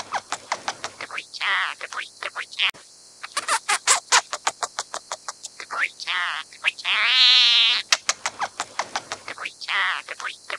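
Scaly-breasted munia singing: runs of quick clicking notes broken by long, wavering drawn-out whistles, one about a second and a half in and another about six and a half seconds in.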